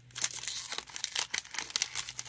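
Foil wrapper of a Panini Optic football card pack crinkling and tearing as it is opened by hand, a quick irregular crackle.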